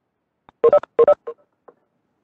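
Two short electronic beeps in quick succession, each a chord of steady tones, followed by two faint blips: a Webex meeting alert chime as a participant joins the call.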